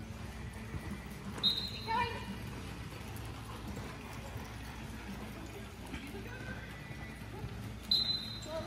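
Hooves of several horses moving at speed over soft arena dirt, a dull, irregular drumming, with a short high-pitched tone about a second and a half in.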